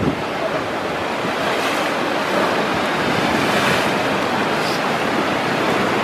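Ocean surf breaking: a steady rush of whitewater that swells slightly over the first few seconds and then holds.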